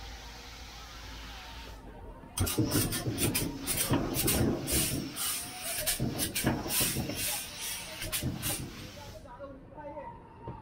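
A steady hiss, then from about two seconds in a person talking close to the microphone in quick bursts, the words not made out, stopping shortly before the end.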